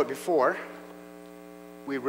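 Steady electrical mains hum, a low buzz with several even overtones, running on its own after a brief voice at the very start.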